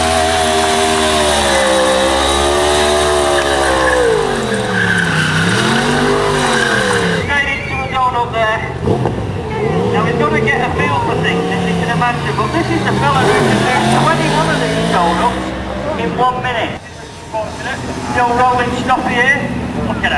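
A 1000 cc sports motorcycle engine revving hard, its pitch repeatedly rising and falling as the rider holds the rear tyre spinning in a smoking burnout and tight circles. The level dips briefly a few seconds before the end.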